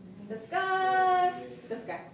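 A woman's voice singing one long, steady, high note lasting under a second, followed by a brief vocal sound near the end.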